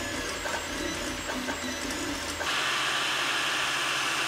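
Anycubic FDM 3D printer running, its stepper motors whining in shifting tones as the print head moves. About halfway through, this gives way to a steady hiss.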